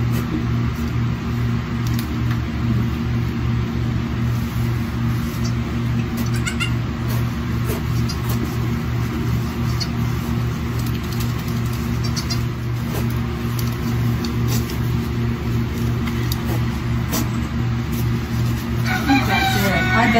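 A steady low hum with a fast even pulse, with a faint brief higher call about six seconds in.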